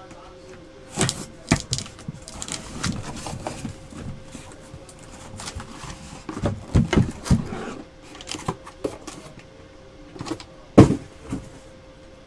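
A cardboard box being opened with a knife and handled: scrapes, rustles and scattered knocks, the loudest a sharp knock near the end, over a faint steady hum.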